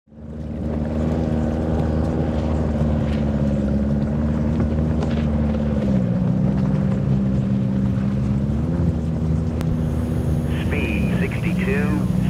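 Stand-up personal watercraft engine running flat out at high speed with a steady pitch that drops slightly about halfway through. A voice comes in near the end.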